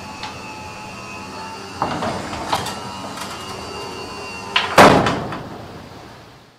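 Roller garage door being moved, with a few knocks and then one loud bang about five seconds in that rings and fades away.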